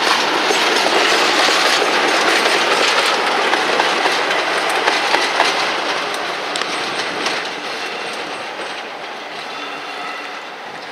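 West Coast Railways Class 47 diesel locomotive passing close at low speed, its Sulzer V12 engine running and its wheels clicking over the rail joints and points. It is loudest as it passes and then slowly fades. A faint high whine comes in near the end.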